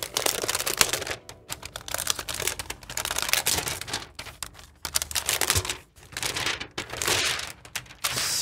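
Clear protective plastic wrapping being pulled off a laptop, crinkling and crackling in irregular bursts with short pauses.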